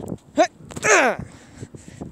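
A man's voice giving two short grunting cries with falling pitch, a quick one about half a second in and a louder, breathier one about a second in: mock fighting cries for plush toys.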